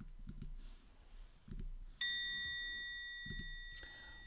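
A few soft clicks and knocks, then about halfway in a bright metal chime struck once, ringing with several high tones and fading over about two seconds.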